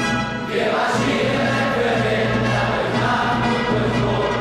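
A choir of boys and young men singing together, with a short dip in the sound about half a second in.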